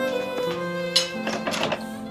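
Background drama score of sustained string notes, with a few short noises about a second in and again around a second and a half in.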